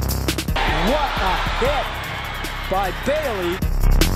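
Electronic music with a heavy beat cuts out about half a second in, giving way to a few seconds of broadcast stadium crowd noise with shouting voices, and the music comes back near the end.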